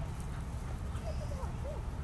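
Wind rumbling on the microphone. About halfway in, faint sing-song vocal tones rise and fall, like a person's voice calling encouragement.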